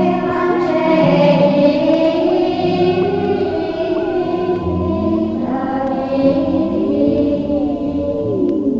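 Choral music: a choir singing long held notes, with some sliding tones in the accompaniment.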